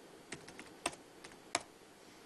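Computer keyboard keys pressed one at a time to switch between charts: a handful of sharp clicks, some in quick pairs, the loudest just under a second in and again about a second and a half in.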